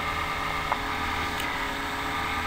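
Steady background hum and hiss of a voice recording, with a faint click a little under a second in.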